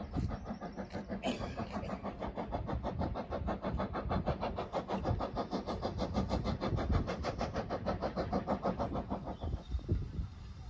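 Steam locomotive working towards the station with a rapid, even exhaust beat, about six chuffs a second, heard from a distance; the beat fades out near the end.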